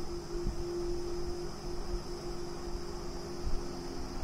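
Steady low rumble and hum of room background noise, with a faint steady tone that fades after about a second and a half.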